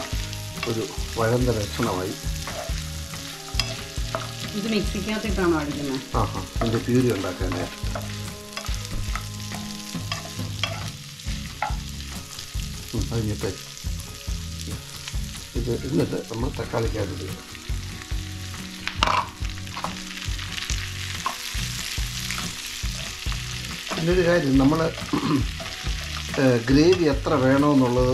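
Wooden spatula stirring and scraping onions, chillies, cashews and potato pieces sizzling in oil in a non-stick pan. Chopped tomatoes go in later, and the stirring grows louder near the end.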